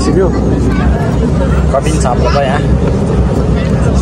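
Turboprop airliner's engines and propellers running with a steady low drone, heard from inside the passenger cabin, with voices over it.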